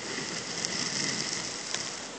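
Stylus scratching across a drawing tablet as lines are drawn by hand: a steady, dry scratchy hiss that swells slightly in the middle.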